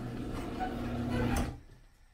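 Overhead sectional garage door rolling down in its tracks, a steady rumble that stops about one and a half seconds in as the door comes to rest on the new rubber floor threshold.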